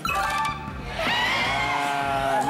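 Game-show answer-reveal cue on the survey board: a chime at the start, then a held musical tone from about a second in.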